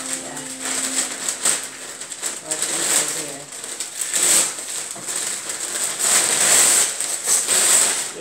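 A paper gift bag and its wrapping rustle and crinkle in quick, irregular bursts as a present is pulled out, loudest in the second half.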